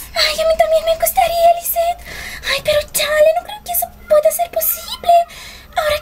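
A high voice singing, holding steady notes in short phrases broken by brief gaps.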